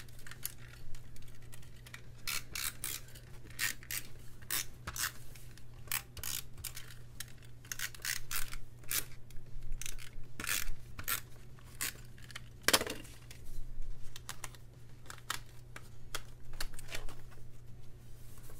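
Paper pages being pulled off and pressed onto the binding discs of a disc-bound planner, with paper handling: an irregular string of sharp clicks and snaps, the loudest about two-thirds of the way through.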